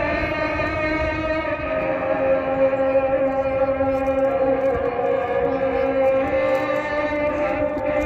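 A voice chanting long held notes that glide slowly up and down in pitch, without pause, in the manner of a religious chant.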